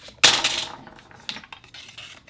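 A small hand-held metal rig is picked up and handled: one sharp metallic clatter about a quarter second in, then a few light clicks.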